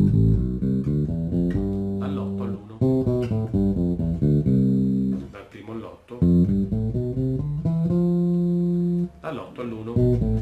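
Fender Jazz Bass playing stepwise scale runs, one note at a time, climbing from the root to the octave and coming back down. It is a modal scale exercise that follows each chord change. The notes come in three or four short phrases with brief breaks between them.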